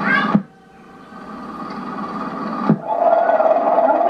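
Children's voices from an old home video, heard through a TV speaker, break off abruptly at an edit. Faint hiss follows and slowly grows louder. A click near three seconds in is followed by a long held note in a voice.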